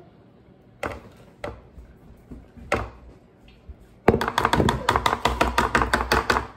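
A spatula knocking against a glass mixing bowl and a metal baking pan as brownie batter is scraped out. There are a few separate knocks, then a rapid run of taps about eight a second from about four seconds in.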